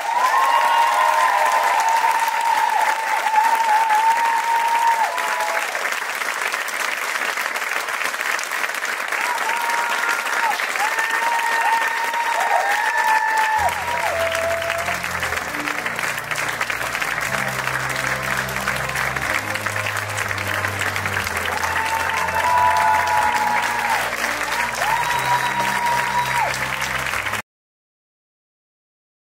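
Theatre audience applauding loudly, with voices calling out over the clapping. About halfway through, music with a bass line starts under the applause, and everything cuts off suddenly near the end.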